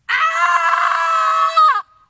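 A woman's single long, loud scream, held at one high pitch for nearly two seconds before it drops and cuts off.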